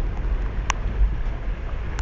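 Wind buffeting a phone microphone held at the open window of a moving car, a steady low rumble over the car's running noise, with one sharp click less than a second in.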